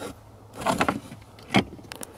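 Hands working in the under-dash fuse box area: a short scraping rustle of plastic, then a knock and a small click as parts are handled.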